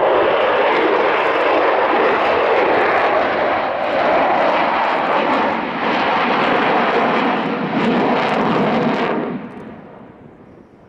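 Avro Vulcan's four Rolls-Royce Olympus turbojets at full power, a loud, steady roar as the bomber banks overhead, falling away quickly near the end.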